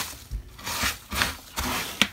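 A few short rustling and scuffing noises, about four in two seconds, with dull low bumps: someone shifting and handling things in a cramped space, close to the phone.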